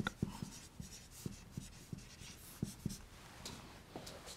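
Marker pen writing on a whiteboard: a string of short, separate strokes and taps as figures and an underline are drawn.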